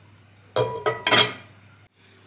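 Kitchenware clinking around a ceramic cooking pot: a quick cluster of clinks and knocks with a short ring, starting about half a second in and fading by about a second and a half.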